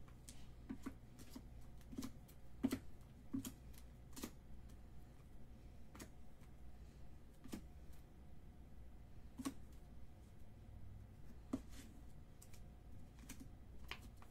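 Trading cards in rigid plastic holders being shuffled and stacked by hand: faint, irregular clicks and taps of plastic against plastic, one or two a second.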